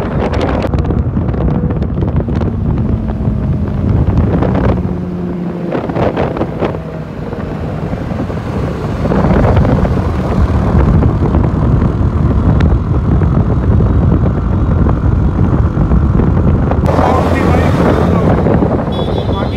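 Sport motorcycle engines running along at road speed under heavy wind buffeting on the microphone. The engine pitch falls in the first few seconds, and the noise grows louder about halfway through.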